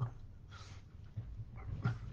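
A man's voice between words: a brief breathy exhale about half a second in, and a soft spoken "no" near the end.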